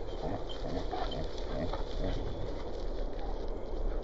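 Dogs running about on grass, their paws padding on the turf in light, irregular patters over a steady low rumble.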